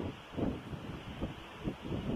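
Faint wind noise on the microphone of an outdoor recording, a low rumble with a few soft irregular gusts.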